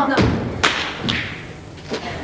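Three dull thumps about half a second apart, each with a short ring after it.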